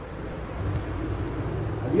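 Low rumble of road traffic, building about half a second in.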